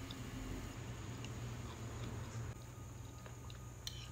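Quiet chewing of a spoonful of grits, with a few faint clicks and a sharper click near the end as the metal spoon goes back into the ceramic bowl, over a steady low hum.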